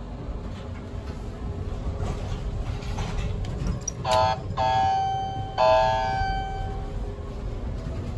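Elevator chime in a hydraulic elevator cab ringing three times about four seconds in, just after a car button is pressed: one short ding, then two longer dings that each fade. A low rumble runs underneath.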